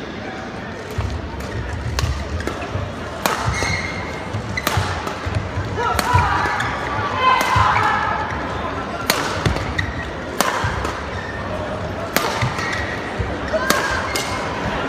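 Badminton rally: rackets striking the shuttlecock in sharp cracks about every one and a half seconds, back and forth, over the murmur of a crowd in a large hall.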